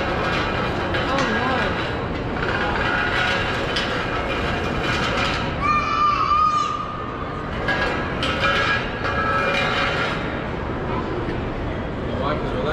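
Background chatter of a busy crowd in a large indoor mall food court: many overlapping voices with no single speaker up front. About six seconds in comes a short high, wavering note.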